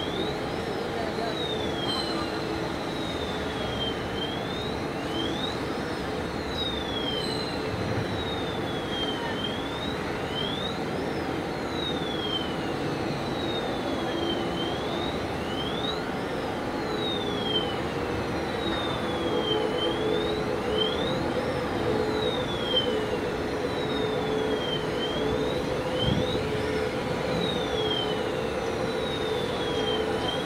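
Electric rail transfer cart running on its track: a steady drive hum, with a high warning siren sweeping down and up in pitch over and over.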